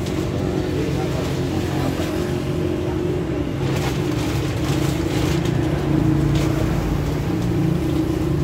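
A steady low engine hum runs under indistinct background voices, with a few short knocks in the middle.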